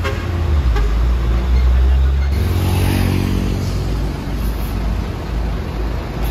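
Heavy diesel trucks running slowly in traffic, with a deep engine rumble. About two seconds in, the sound changes abruptly and a higher, pitched engine note comes in over road noise.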